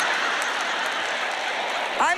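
A large audience laughing together, merging into a steady wash of crowd noise.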